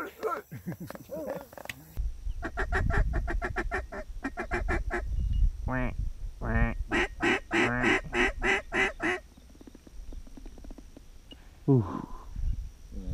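A flock of geese honking in flight: many short overlapping calls, several a second, over low wind rumble on the microphone. The calling stops about nine seconds in.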